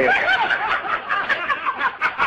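A person snickering, laughing in quick short bursts.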